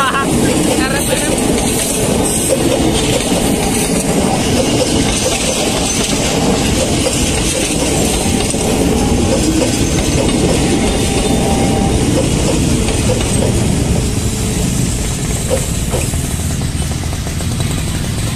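Electric commuter train passing close by: a steady, loud running noise of the wheels on the rails.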